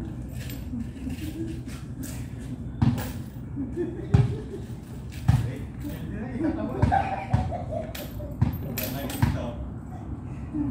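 A string of about seven sharp, dull thuds at uneven intervals, with men's voices.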